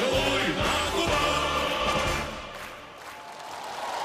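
The final bars of a Russian naval march, sung by a choir with a brass band, ending a little over two seconds in. An even crowd noise, the start of applause, then builds towards the end.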